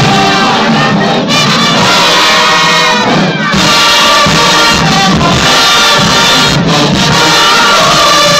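Marching band's brass and drums playing loudly at close range, sustained chords over a steady drum beat, with a brief falling slide and dip about three seconds in. Crowd noise mixes in.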